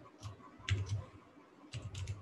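Computer keyboard being typed on: two short runs of keystroke clicks about a second apart.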